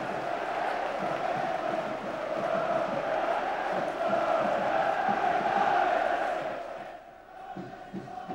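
Football crowd in the stands chanting together in celebration of a goal, swelling in the middle and dropping away near the end.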